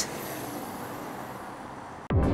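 Steady car and road noise, an even rushing hiss with no distinct events.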